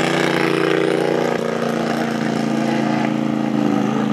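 Rock bouncer buggy's engine running hard under load as it climbs a steep dirt hill, its pitch held nearly steady.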